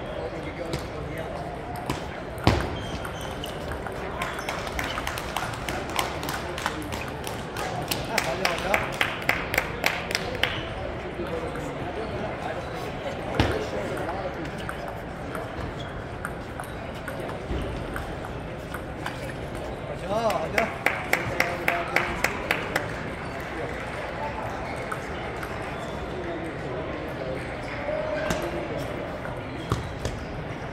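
Table tennis ball clicking off paddles and table in two quick rallies, each a run of about a dozen evenly spaced clicks lasting two to three seconds, about a third and two thirds of the way through. Scattered single ball clicks and the chatter of a large crowded hall run underneath.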